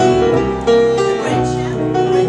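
A live jazz combo of piano, archtop guitar and upright double bass plays an instrumental passage with no lead vocal.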